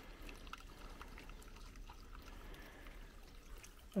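Faint trickling of water running into a pond through an inflow channel, with a few soft drips.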